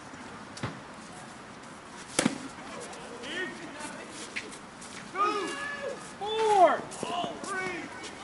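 A softball bat hitting a slowpitch softball: one sharp crack with a short ring about two seconds in. A few seconds later, players and onlookers shouting, with rising and falling calls.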